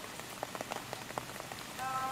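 Recorded rain ambience, a steady hiss with scattered drop-like ticks, opening the next song, with a few held musical notes coming in near the end.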